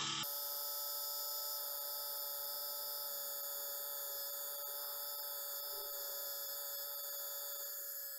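Philips YS521 rotary electric shaver motor running steadily, a constant hum made of several steady tones, quite loud. It runs on two freshly fitted 300 mAh replacement cells and runs smoothly, without the faltering of a failing battery.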